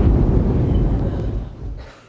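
Thunder sound effect: a loud, low rumble that fades away over the last half-second or so.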